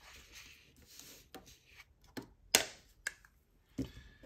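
Paper sheets rustling as they are handled and laid flat, followed by a few sharp clicks, the loudest about two and a half seconds in, as a Sharpie marker is picked up and its cap pulled off.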